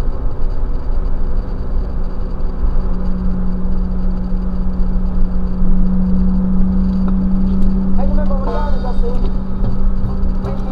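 Cabin noise of a BMW E36 M3's straight-six cruising on a highway: steady tyre and engine drone with a low, even hum that swells through the middle. Music with a wavering melody comes in near the end.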